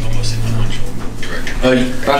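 Mostly speech: a man's voice begins near the end, over a steady low hum.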